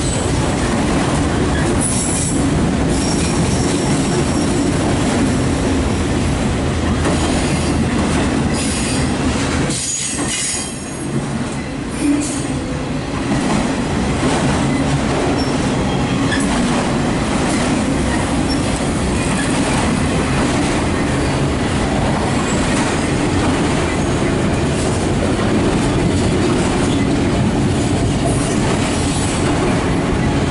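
Loaded autorack freight cars rolling past at close range: a steady rumble of steel wheels on rail, with faint high wheel squeal now and then. It dips briefly about ten seconds in, then picks up again.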